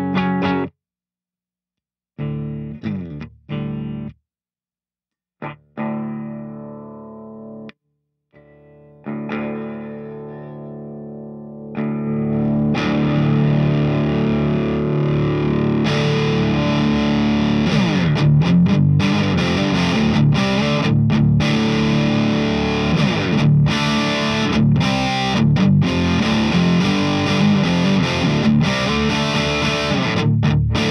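Electric guitar played through a Mesa/Boogie Single Rectifier Rectoverb 50 tube amp on its clean channel: separate chords ring out and decay, with pauses between them. From about twelve seconds in the playing runs on without a break. From about sixteen seconds in the amp is on its crunch channel, giving a brighter distorted tone with chords stopped short.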